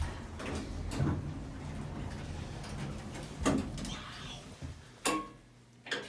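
Hydraulic elevator's car doors sliding open, a rumbling noise lasting a few seconds, with a few sharp knocks, the loudest about three and a half and five seconds in.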